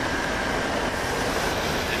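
Steady running-vehicle noise, a low rumble and hiss with a faint high whine held throughout.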